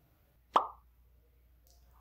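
A single short, sharp pop about half a second in, a click followed by a quick drop in pitch.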